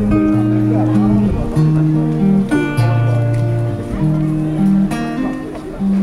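Acoustic guitar played live in a song's instrumental passage, a melody of held notes that change pitch every half second or so.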